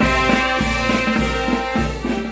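Wind band playing a march, with trumpets and trombones over a steady beat of about two beats a second.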